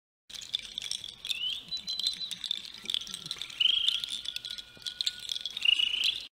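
Rainforest ambience: a steady high insect drone, with short rising chirps about a second and a half in, near the middle and near the end, the last two loudest, and scattered sharp clicks.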